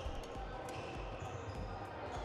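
Sports hall ambience from badminton play: scattered light knocks and taps, shuttlecock hits and shoes on the wooden court floor, over a low hum of the hall.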